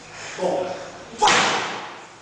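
A single sharp crack about a second in, ringing on in the hall, after a brief voice.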